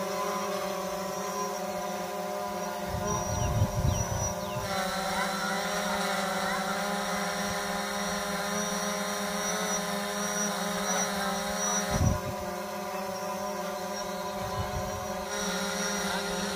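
A quadcopter drone hovering, its propellers giving a steady multi-tone hum. There are a couple of brief low thumps, one at about three to four seconds in and one about twelve seconds in.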